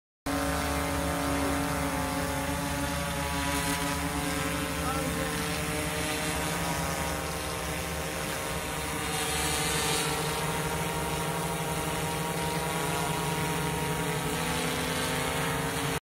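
DJI Matrice 210 quadcopter hovering: the steady buzz of its four rotors, with a stack of motor tones that drift slightly in pitch partway through as the drone holds its position.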